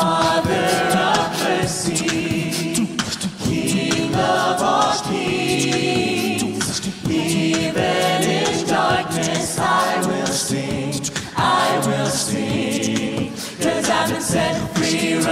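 A cappella vocal group of mixed male and female voices on microphones, singing a worship song in harmony.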